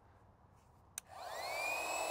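Rechargeable handheld electric air pump switched on: a click about a second in, then its small motor spins up with a rising whine and runs steadily, blowing air.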